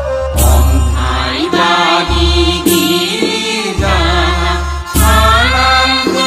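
Bathou devotional song: voices singing a chant-like melody over music with long, deep bass notes.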